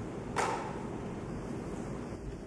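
A pause without speech: steady background hiss of the courtroom microphone feed, with one brief soft burst of noise about half a second in.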